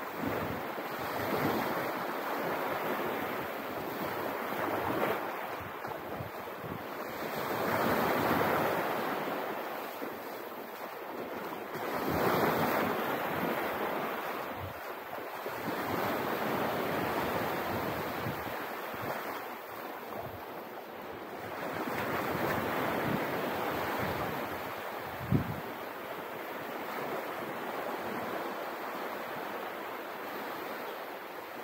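Small waves washing up on a sandy beach, the wash swelling and fading every three to four seconds, with wind buffeting the microphone. A single sharp thump late on.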